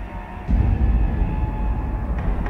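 Title-sequence music for a TV news programme: a deep bass rumble hits about half a second in and holds under the theme.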